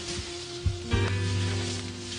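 Background film score music with sustained notes. About a second in, new notes and a deep bass note come in.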